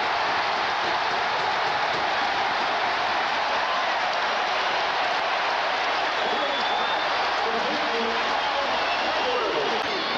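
Stadium crowd cheering loudly and steadily, a home crowd celebrating a Buffalo Bills touchdown.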